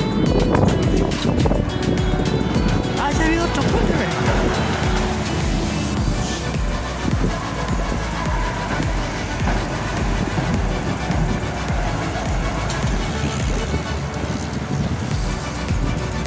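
Wind rumbling and buffeting on the microphone over the steady noise of a car driving across a steel truss road bridge.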